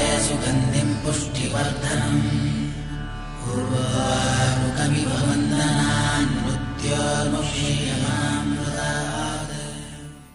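Devotional music with voices chanting a mantra over a steady low drone, fading out near the end.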